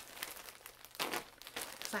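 Sealed packaging being crinkled and ripped open by hand, with sharper crackles about a second in and again near the end.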